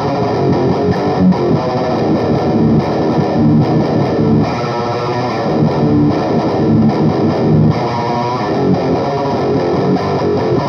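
Ibanez S-series electric guitar playing chunky heavy riffs through a Laney amp with a Jekyll and Hyde distortion pedal engaged, without a break.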